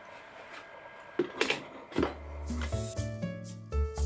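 A few light knocks as a plastic bottle on a wooden jig is handled, then background music with a bass line and sustained keyboard-like notes starts about halfway through and carries on.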